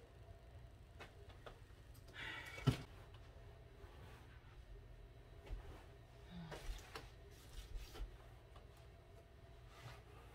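Quiet room with a few faint knocks from furniture being handled, and a short scraping rustle that ends in a thump about three seconds in.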